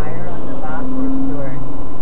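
Steady drone of a car on the move, heard from inside the cabin, with a couple of short snatches of a person's voice.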